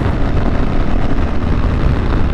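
Wind noise on a helmet-mounted lavalier mic at highway speed, heaviest in the low end, over the steady running of a 650cc single-cylinder motorcycle engine. It is windy but has no pops or crackling.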